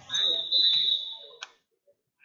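A loud, high-pitched steady tone that lasts just over a second, cut off sharply, with faint voices underneath.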